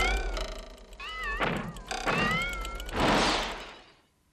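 A cartoon 'funny noise': a run of warbling, wobbling squeals that slide up and down over a low rumble, ending in a hissing rush about three seconds in that fades away.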